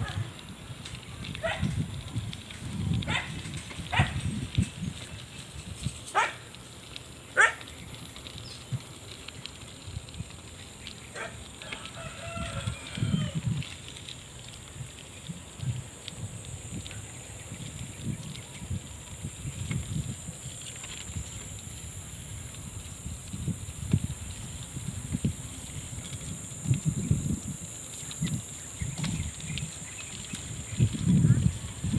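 A rooster crowing once partway through, with a few short sharp calls in the first several seconds, over the uneven low rumble of wind and road noise from a bicycle riding along a concrete road and a steady high hiss.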